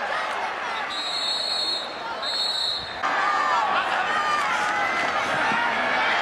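Stadium crowd noise of many voices, with two short, high whistle blasts in the first three seconds. After about three seconds the crowd gets louder, with individual voices shouting.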